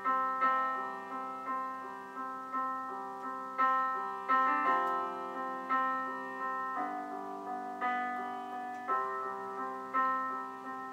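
Solo piano playing a slow, gentle intro, notes and chords struck about twice a second and left to ring and fade.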